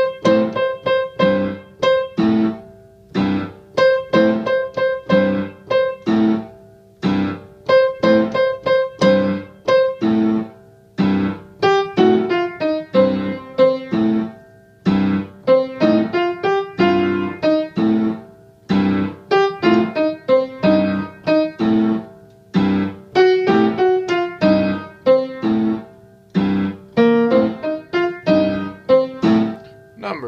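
Piano playing a blues rhythm exercise: short, detached chords and repeated notes in a syncopated pattern, with a melodic line moving up and down through the second half.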